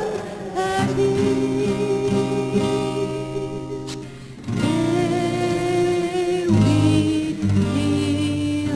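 A woman singing a slow song in long held notes, accompanied by a man on acoustic guitar. The voice drops away briefly about halfway through, then comes back in on a new held note.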